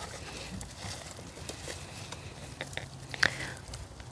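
Gloved hands digging and rummaging through loose, damp potting soil among rustling leaves, with scattered small crackles and one sharper snap about three seconds in.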